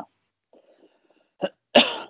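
A man coughing twice near the end, the second cough louder.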